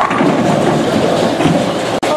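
Bowling-alley din: balls rolling on the lanes and pins clattering, a steady loud rumble with one sharp knock at the very start.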